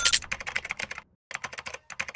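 Computer keyboard typing sound effect: a fast run of key clicks that pauses briefly just after a second in, then resumes, keeping time with on-screen text being typed out.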